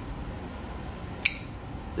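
Knafs Lander folding knife flicked open, the blade swinging out on its bearing pivot and locking with one sharp metallic click about a second and a quarter in.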